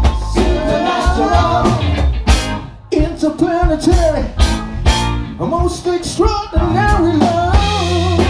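Live band playing a song: female vocals over drum kit, electric guitar, bass and keyboard. About two and a half seconds in the band stops on a single hit and drops out for under half a second, then comes back in.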